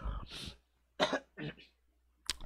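A man coughing and clearing his throat: a cough right at the start, then two short throat-clearing bursts.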